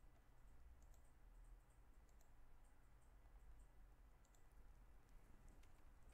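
Near silence: a steady low hum with faint, irregular clicks of computer keys being pressed.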